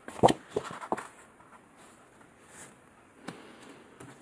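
Paper planner inserts being handled: a few short taps and rustles in the first second as a divider sheet is turned and set down, then quieter handling with one more tap near the end.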